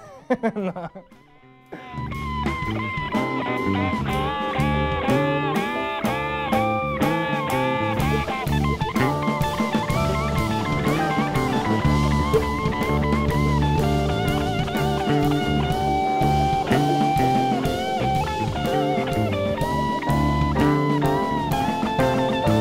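Blues-style band music comes in about two seconds in: a guitar with bending notes over a drum kit keeping a steady beat.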